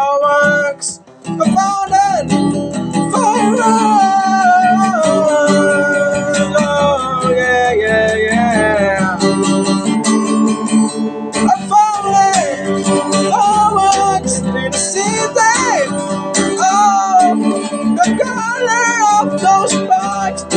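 Steel-string acoustic guitar with a capo, strummed in chords, with a voice singing a melody over it. The playing breaks off briefly about a second in, then carries on.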